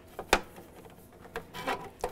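Handling noise of a plastic drain hose being moved and tugged at an ice maker's drain pump fitting: faint rubbing with two sharp clicks about a second apart.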